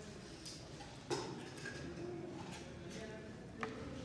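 Two sharp clicks, about a second in and again near the end, from test-lead clips and cables being handled while they are connected to batteries, over faint room noise.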